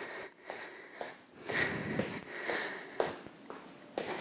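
A woman breathing in and out from the exertion of side-stepping, with a few soft footfalls of trainers on the floor.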